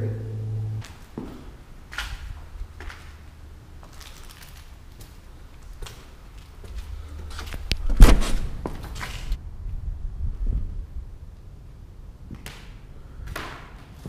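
Scattered short knocks and thuds, with one loud thump about eight seconds in followed by a low rumble for a few seconds.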